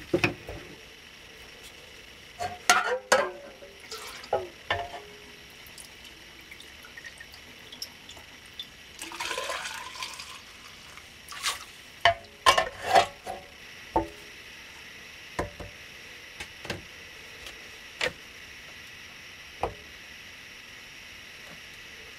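Hot melted wax poured from an aluminum dipping cup through a funnel into a paper tube, a short pouring sound about nine seconds in. Around it come scattered clicks and knocks of the metal cup, funnel and tube against the pot and cone.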